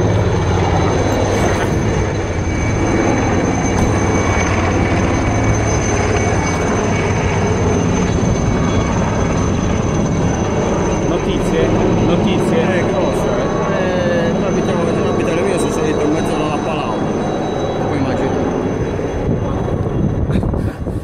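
Firefighting helicopter flying nearby: a steady, loud rotor and engine noise with no letup.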